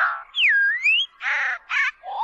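Songbird calls: a clear whistle that dips in pitch and climbs back up, followed about a second in by harsh, raspy calls.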